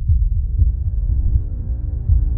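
Horror trailer soundtrack: deep heartbeat-like bass pulses, about two a second, with a dark held musical chord swelling in about a second in.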